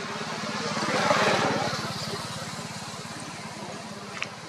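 A motor vehicle's engine running with an even low pulse, and a swell of noise about a second in that fades away as it passes.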